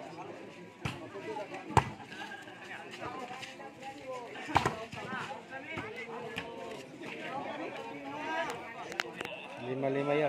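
Voices of players and onlookers chattering and calling. Several sharp smacks of a volleyball being struck cut through it, the loudest about two seconds in and again about four and a half seconds in.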